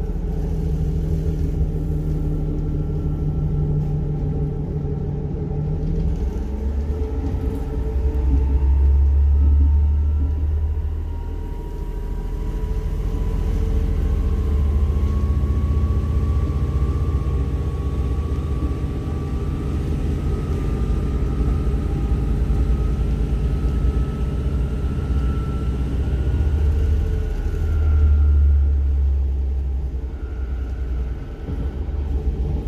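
Steady low rumble of a diesel railcar under way, heard from inside the passenger cabin, with a faint whine that climbs slowly in pitch over most of the stretch as the train gathers speed.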